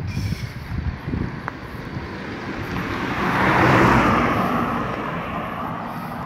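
A car passing by on the road: its tyre and engine noise swells over a couple of seconds, is loudest about four seconds in, then fades away.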